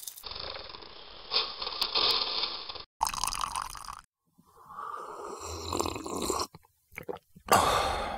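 A string of short, separately cut sound effects: coffee beans pouring and rattling into a roaster's perforated cooling tray, then breathy slurps of someone sipping hot coffee from a cup, with a few short clicks between them.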